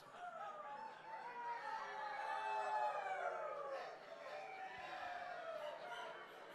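Audience members imitating rooster crows, many voices crowing at once and overlapping for several seconds.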